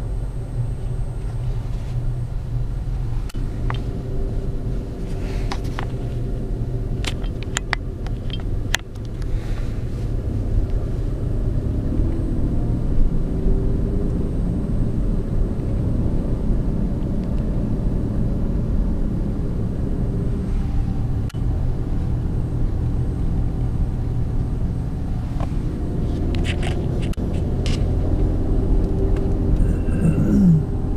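Steady low rumble of a car's engine and tyres heard from inside the cabin while driving slowly, with a few scattered light clicks and ticks.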